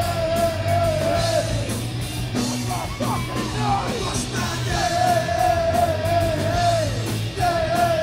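Live rock band playing electric guitars, bass and drums with crashing cymbals, heard from within the crowd in a concert hall. Long held vibrato notes ring over the band near the start and again in the second half, with shorter sliding notes in between.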